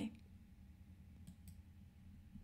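Near silence: room tone with a faint steady low hum, and two faint short clicks close together about one and a half seconds in.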